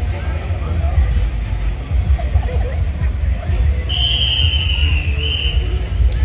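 Crowd chatter over a steady low rumble. About four seconds in comes one long, high whistle that falls slightly in pitch and lasts about a second and a half.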